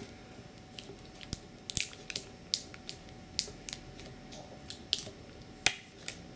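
Plastic screw cap of a small plastic drink bottle being twisted open by hand: a string of sharp, irregular clicks as the cap turns and its tamper-evident ring breaks, the loudest near the end.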